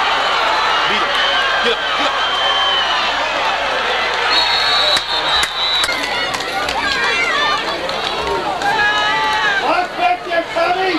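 Football spectators' many overlapping voices shouting and calling out, with no single voice standing out. About four seconds in, a steady high whistle sounds for over a second, most likely the referee's whistle ending the play.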